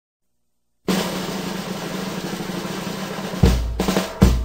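Music opening with a snare drum roll that starts about a second in, then a heavy bass drum hit near the end as a steady drum-kit beat begins.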